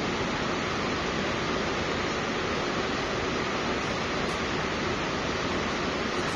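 Steady, even hiss with no other sound: the background noise of a lecture recording.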